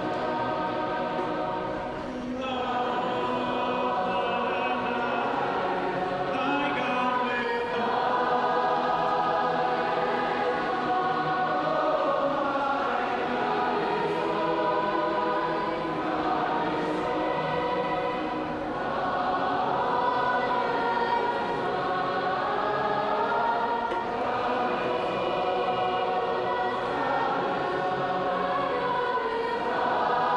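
A large group of young voices singing a praise song together, continuously, with a short breath-like dip about two seconds in.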